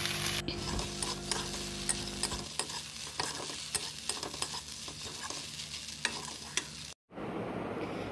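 Fusilli pasta being stir-fried in a pan: a low sizzle with repeated clicks and scrapes of a metal spatula against the pan as it is turned.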